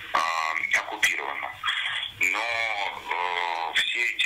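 A man speaking over a telephone line, his voice thin and narrow, with long drawn-out syllables.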